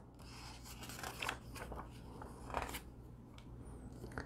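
Pages of a picture book being turned by hand: faint paper rustling with a few brief swishes, the clearest about two and a half seconds in.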